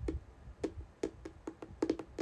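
Fingertips tapping a phone's touchscreen close to the microphone: about ten quick, irregular taps, thickest near the end.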